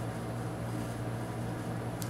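Room tone: a steady low hum with a faint even hiss.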